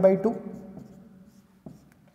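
Marker pen writing on a whiteboard, faint scratching strokes, with one short tap of the pen on the board about one and a half seconds in.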